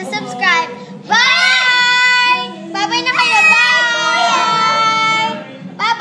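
Children singing loudly in high voices, holding two long notes that bend in pitch, with a third starting near the end.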